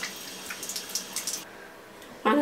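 Water running from a bathroom sink tap into the basin, with hands under it. It fades out about one and a half seconds in.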